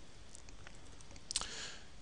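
Quiet room hiss with one brief, sharp click about a second and a half in, followed by a soft, breath-like hiss.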